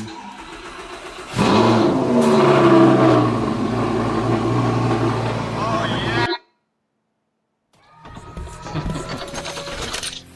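An Audi sports car's engine starting and revving, from the TikTok clip's own soundtrack. It comes in loud a little over a second in and cuts off abruptly about six seconds in. After a short silence, the next clip's sound starts.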